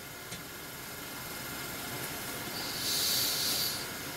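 Steady hiss of a man's open microphone during a pause in speech. Near the end, a single breath of about a second is heard through the nose into the microphone.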